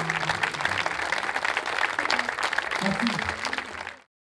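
Audience applauding, with voices in the crowd, as the last acoustic guitar chord rings out and dies away; the applause fades out near the end.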